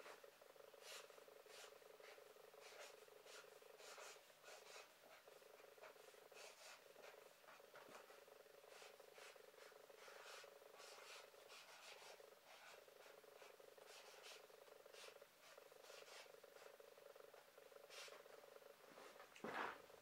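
Felt-tip marker writing on paper: faint, irregular short scratchy strokes, with a steady low hum beneath.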